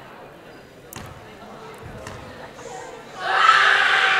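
A basketball bounced a few times on a hardwood gym floor, the thumps sharp against a quiet gym. About three seconds in, a loud swell of voices and crowd noise comes up.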